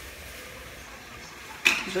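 Ground beef browning in the pot of an electric pressure cooker: a faint, steady sizzle.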